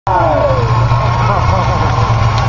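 Engines of several combine harvesters running together in a steady low rumble, with a voice over it.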